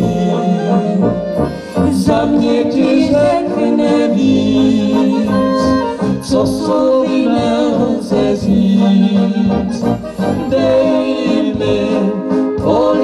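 A Czech brass band (dechová hudba) playing an instrumental passage, with saxophones, trumpets and tuba.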